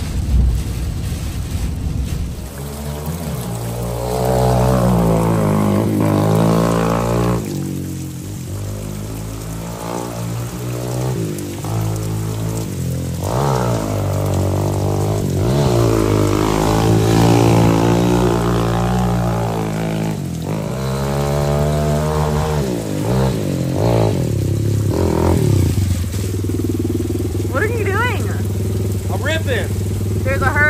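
Dirt bike engine revving up and down again and again with brief drops in between, then settling to a steady idle near the end.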